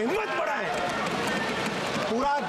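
Members of parliament thumping their desks in a steady patter of thuds, mixed with several voices talking over one another in the chamber.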